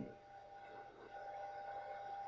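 A pause in speech: faint background hiss from the recording with a thin, steady high tone running underneath.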